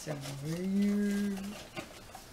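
A person's long, drawn-out vocal exclamation of admiration, a wordless "ooh" or hum that rises in pitch and is then held for about a second, with a few faint clicks of a box being handled.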